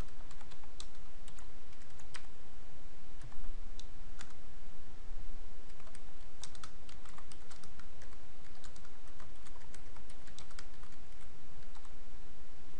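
Typing on a computer keyboard: irregular runs of light key clicks over a steady background hiss.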